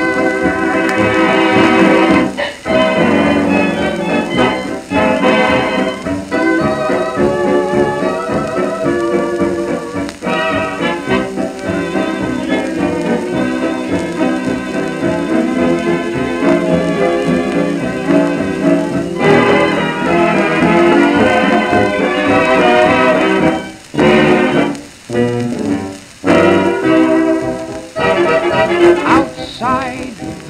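Instrumental fox-trot by a dance orchestra, played from a 78 rpm shellac record. The sound is dull and narrow, with no highs, as on an old recording, and the band stops briefly a couple of times near the end.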